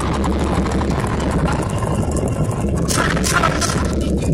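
Loud, bass-heavy hip-hop beat playing through a concert PA, muddy and overloaded on a phone microphone, with a few sharp hits about three seconds in.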